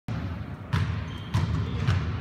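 A basketball being dribbled on a hard court: three bounces a little over half a second apart.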